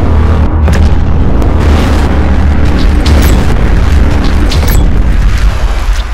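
Loud fireworks sound effect: a continuous deep booming rumble with scattered sharp crackles and pops.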